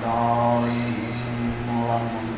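A man's amplified voice chanting in a slow, drawn-out melodic recitation, holding long steady notes.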